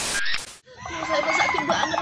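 A short burst of TV-static hiss, a glitch transition effect, for about the first half second. Then chickens clucking in the background.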